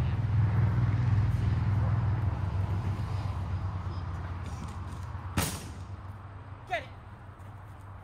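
A motor vehicle's engine, starting abruptly loud and fading away slowly over several seconds, with a single sharp knock about five seconds in.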